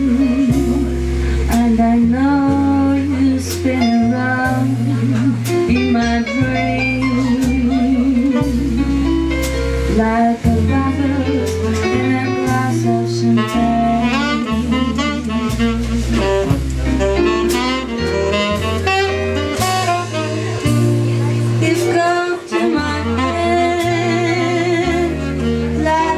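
Live jazz band playing an instrumental passage: a saxophone soloing with vibrato and quick runs of notes in the middle, over a bass line moving note by note, piano and drums with cymbal strokes.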